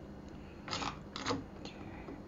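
Faint handling noise from a linear actuator being fitted to an outboard's throttle linkage: three short, light clicks and scrapes as the actuator's rod end is worked against the linkage.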